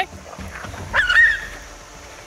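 Dingo giving one short, high yelp with a rising pitch, about a second in.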